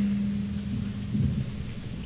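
Low rumble of room noise that fades, with a steady low hum that stops about a second in.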